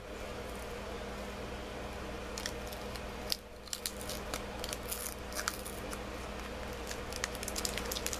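Wax-paper wrapper of a resealed 1990 Donruss baseball card pack being peeled open by hand, giving scattered short crinkles and crackles from about a third of the way in, more frequent near the end, over a steady low hum.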